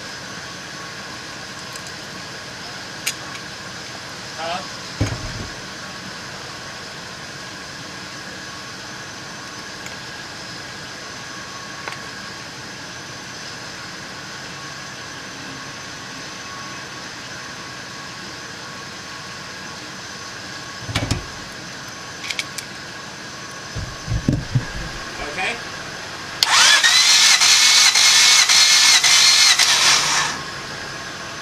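1994 Honda Civic D16Z6 engine cranked over on its starter for a compression test, for about three and a half seconds near the end: a whine that rises and then holds steady. A few scattered knocks and clicks come before it.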